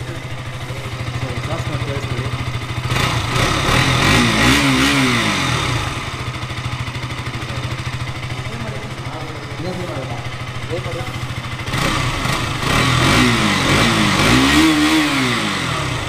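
2022 KTM RC 200's single-cylinder engine idling and blipped twice: once about three seconds in and again near the end. Each rev rises and falls back to idle.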